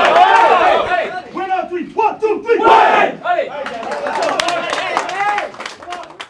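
A group of men shouting together in a team huddle, many voices at once in a loud rallying cry, with sharp claps breaking in during the second half before it tails off.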